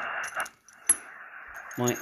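Shortwave receiver hiss from a Xiegu X6100 transceiver's speaker cuts out about half a second in. A single sharp click follows as the antenna is switched over, and the band noise then comes back fainter.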